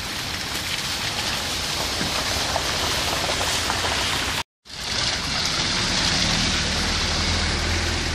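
Steady, rain-like hiss of a wet, slushy street. It drops out for a moment about halfway through, then resumes with a low steady hum beneath it.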